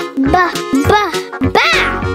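Children's song backing music with a high, cartoon-style voice making three or four short calls that swoop up and down in pitch, then a held chord near the end.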